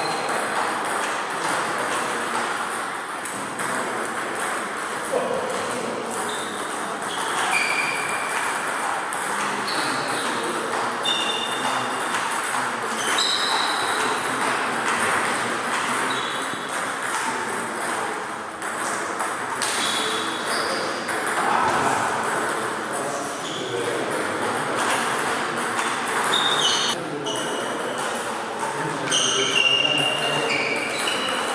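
Table tennis balls striking bats and tables in quick, irregular pings from several tables at once, each a short high ring.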